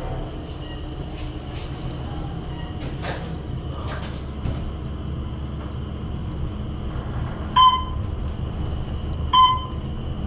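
Otis traction elevator car running upward with a steady low hum. There are a couple of faint clicks in the first half, and near the end two short electronic beeps sound about two seconds apart as the car passes floors.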